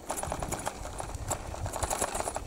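Bicycle riding over a sandy dirt road: tyres crunching on grit and the bike rattling in quick, irregular small clicks, over a low rumble of wind on the microphone.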